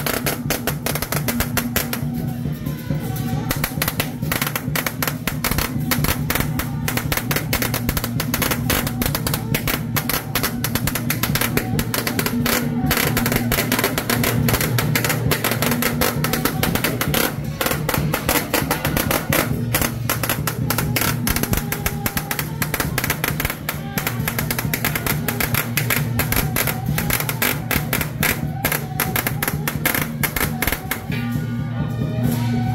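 Loud procession music with drums and a steady low drone, over a dense, rapid crackle.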